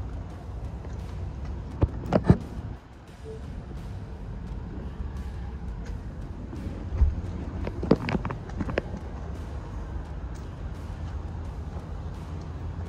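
Steady low outdoor rumble, with two short clusters of sharp clicks and knocks, one about two seconds in and another about eight seconds in.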